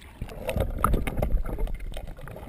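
Sea water sloshing and gurgling around a camera held at the surface, with a low rumble and a few short splashes.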